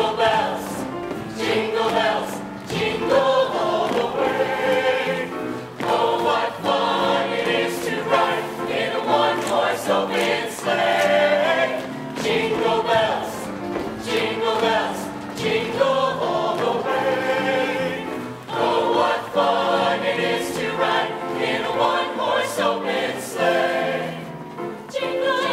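A mixed show choir of male and female voices singing together in parts, continuously.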